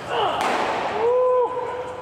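A fastball of about 99 mph cracks sharply into a catcher's mitt once, about half a second in. About a second in it is followed by a man's held shout.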